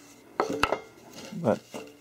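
Steel hex nuts clinking against each other and the steel press bed: a few sharp metallic clicks with a brief ring about half a second in.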